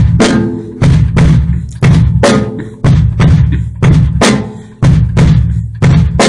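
Drum kit beat with the bass drum played in a toe-ball shuffle, the beater left resting against the head after each stroke. A deep kick lands about once a second, with sharper drum strikes in between.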